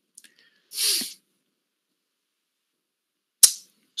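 A man's short, hissy breath into a close microphone about a second in, and a brief mouth click shortly before he speaks again. Silence around both sounds.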